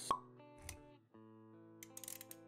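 Intro sound effects over background music: a sharp pop just after the start, the loudest sound, then a softer low thump about two thirds of a second in. The music cuts out briefly around one second and comes back with held notes.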